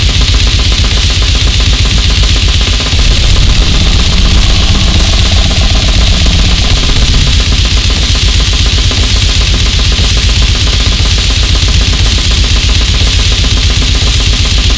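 One-man goregrind music: loud, dense distorted noise over rapid, unbroken drumming.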